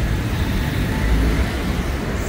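Steady roadside traffic noise, a low rumble with no distinct events.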